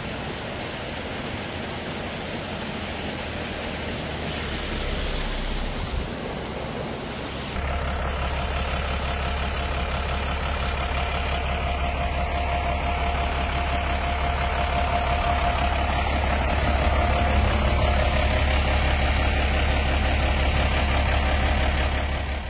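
A steady rushing noise for about seven seconds, then an abrupt change to a heavy truck's diesel engine idling with a steady low drone.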